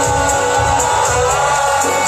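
A live pop ballad played over a concert hall's sound system, recorded from the audience, with a male vocal holding long notes that shift pitch about a second in.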